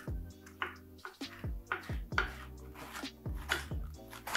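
A kitchen knife slicing a white cabbage into thin strips on a wooden cutting board, with a crisp cut about twice a second at uneven spacing, over background music.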